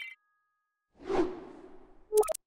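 A single whoosh sound effect about a second in, rising quickly and fading away over most of a second: a motion-graphics transition effect.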